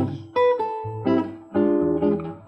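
Nylon-string classical guitar playing a short solo fill between sung phrases of a slow jazz ballad: a few plucked chords about half a second apart, each ringing and fading before the next.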